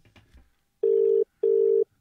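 Australian-style telephone ringback tone on an outgoing call that has not yet been answered: one double ring, two short beeps of a steady low tone, about a second in.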